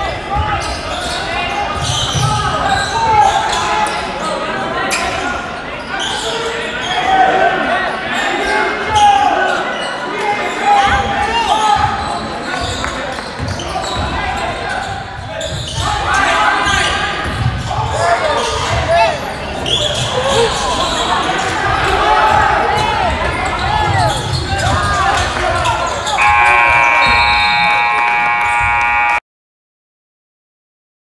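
Gym crowd noise at a basketball game: spectators calling out and cheering over the thump of a dribbled basketball. Near the end a scoreboard horn sounds a steady tone for about three seconds, then the sound cuts off suddenly.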